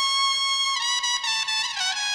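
Music from an electro-house DJ mix: a single trumpet-like lead line holds a high note, then steps down in pitch about a second in and again near the end, with no beat or bass underneath.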